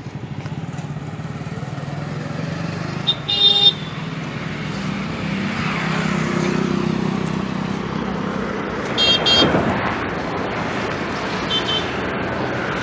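Road traffic running past, its drone building and passing close, with a short horn honk about three and a half seconds in, another around nine seconds, and a faint toot near the end.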